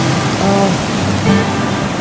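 A song with singing and instruments plays over a steady rush of breaking surf.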